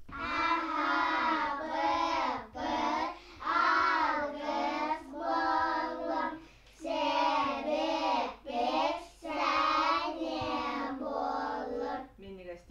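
Young children singing a song together without accompaniment, in held phrases of a second or two with short breaks between them.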